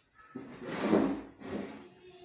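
Shuffling scrape of a person getting up from a plastic chair. It swells to its loudest about a second in, then fades.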